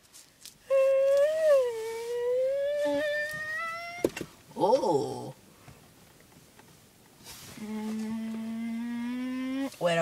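A boy's voice making drawn-out humming, wordless sounds: a long tone that slowly rises, a quick falling swoop, then after a short pause a lower steady tone.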